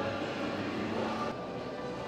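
Steady outdoor background noise with faint music under it; the higher hiss drops away abruptly about two-thirds of the way through.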